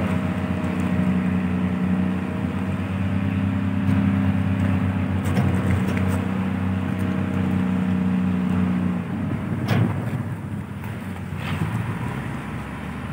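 A large engine running at a steady speed, with a constant low hum that cuts off about nine seconds in.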